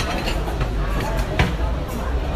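Restaurant dining-room noise: background voices over a steady low rumble, with two sharp clicks, one at the start and one about a second and a half in.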